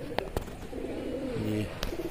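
Domestic pigeons cooing close by, a low steady coo about a second in, with a few sharp clicks.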